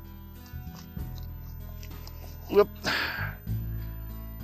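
Background music with steady low notes. About two and a half seconds in, a short burst of a man's voice breaks in, followed by a breathy exhale.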